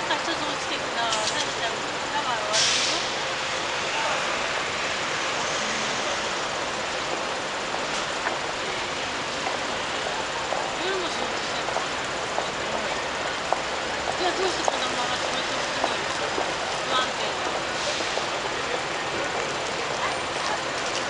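Busy street ambience at a big city station: a steady wash of traffic and crowd noise, with scattered voices of passers-by and a short hiss about two and a half seconds in.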